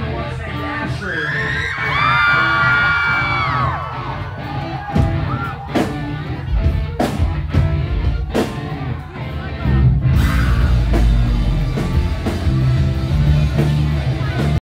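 A loud live rock band starting a song: a held note with several overtones falls away a few seconds in, then drum hits and a heavier, fuller band sound from about ten seconds in, with the crowd yelling and cheering.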